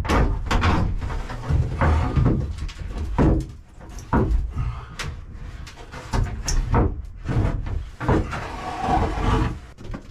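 A large plastic shower ceiling liner being handled and shifted in its opening: irregular knocks, scrapes and flexing rattles throughout, with several sharp knocks.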